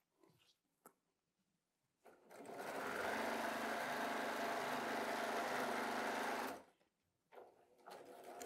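Electric sewing machine running at an even speed for about four seconds while it stitches a seam through quilt pieces. It starts about two seconds in with a short build-up and stops abruptly.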